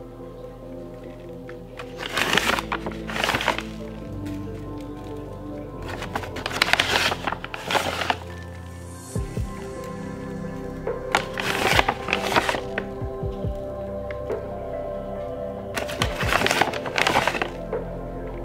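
Soft background music with long held tones, broken about five times by short crinkling rustles of a plastic pouch as a hand reaches into it.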